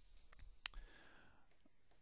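Faint clicks of a stylus on a tablet screen while handwriting: a few light ticks, then one sharper click about two-thirds of a second in.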